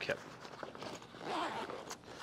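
Zipper on a camera sling bag being pulled, a rasping slide that swells about a second in.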